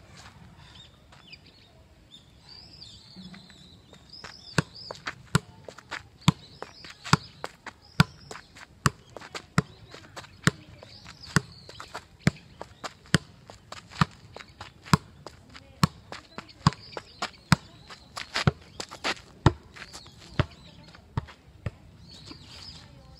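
A football kicked up repeatedly off the outside of the left foot: a steady run of about twenty sharp kicks, roughly one a second, starting about four seconds in and stopping near the end. Birds chirp faintly.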